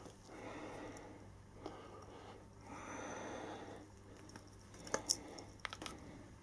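Faint breathing of a man straining to squeeze a heavy torsion-spring hand gripper shut with his left hand, with soft handling noise and a few light clicks near the end. He fails to close it.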